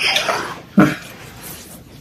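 A person's breathy vocal sound, then one brief pitched vocal sound a little under a second in.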